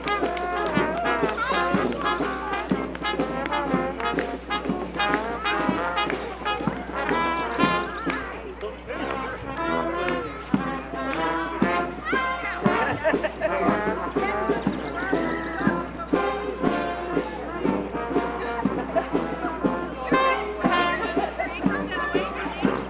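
A community marching band of brass, with sousaphone and trombone among them, playing a tune over a steady beat.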